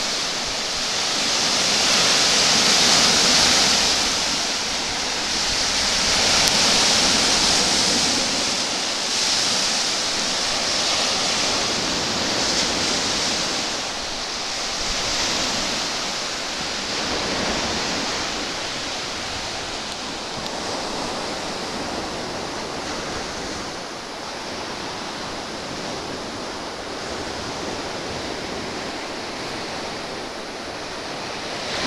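Small Baltic Sea waves breaking on a sandy beach: a steady rush of surf that swells and falls every few seconds, easing somewhat in the second half.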